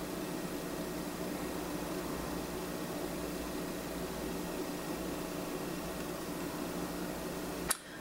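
Steady room background: an even hiss with a faint low hum, dropping away briefly near the end.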